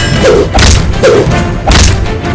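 Heavy thuds of fight-scene punch effects, two big hits about a second apart, over trailer music.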